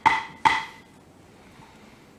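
Wooden gavel struck on its block by the committee chair: the last two of the customary three strikes declaring a motion passed, about half a second apart, each with a short ring.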